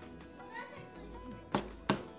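Soft background music, with two sharp clinks of forks against metal plates about one and a half seconds in, a third of a second apart.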